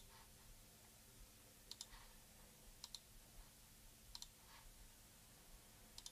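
Faint computer mouse clicks over near silence, a few times, several as quick pairs of press and release.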